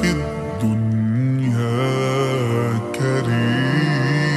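Vocals-only nasheed, slowed down with heavy reverb: male voices hold long, slowly gliding notes in layered harmony, with no instruments. There are short breaks between phrases about half a second in and again about three seconds in.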